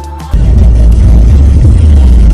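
Backing music cuts off shortly after the start, giving way to a very loud, steady rush with a heavy low rumble: road and wind noise inside a moving car, picked up by a small camera's microphone.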